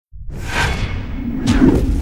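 Logo-intro sound effects: two whooshes, the second starting sharply about one and a half seconds in, over a steady low rumble.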